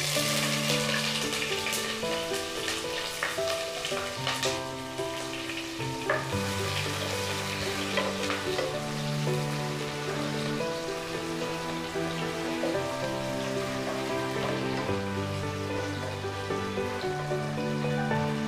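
Sliced onions sizzling as they fry in hot oil in a non-stick pot, with a spatula scraping and knocking against the pot as they are stirred. Soft background music with long held notes plays underneath.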